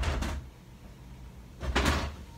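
Two short scraping, rustling noises of someone rummaging through stored things, one at the start and one near the end, about a second and a half apart.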